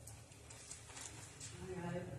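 Faint rustling and light ticks of Bible pages being turned, over a low steady room hum; a distant voice starts faintly near the end.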